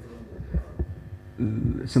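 A few short low thumps during a brief pause, then a man starts speaking in Arabic into a table microphone about one and a half seconds in.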